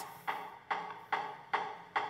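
Recorded walrus making its knocking 'beatboxing' sounds with its throat air sac: evenly spaced percussive knocks, about two a second, like a drum beat. This is a walrus courtship display.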